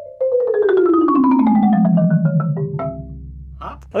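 Five-octave Malletech marimba played with four mallets: a fast descending run of notes that sweeps from the middle of the keyboard down into the low register over about two and a half seconds, ending on low bass notes left ringing.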